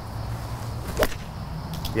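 A golf iron swung through a short shot off fairway grass: one quick swish and strike on the ball about a second in.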